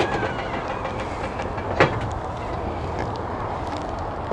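A steel stovetop kettle's whistle sliding down in pitch and dying away as the portable gas stove's knob is turned off with a click. Then a steady low rumbling background with one sharp knock about two seconds in.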